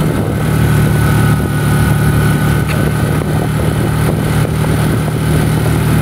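Steady engine hum and road noise from a moving vehicle, running at an even pace with no change in pitch.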